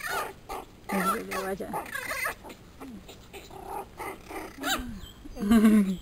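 Pomeranian puppies vocalizing in short bouts, mixed with a woman's voice.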